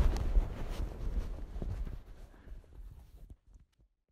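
Wind rumbling on an outdoor microphone, with a few faint ticks of handling, fading out over about three seconds into silence.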